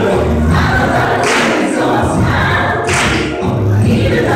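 A group of voices singing together as a choir, with a sharp accent recurring about every second and a half.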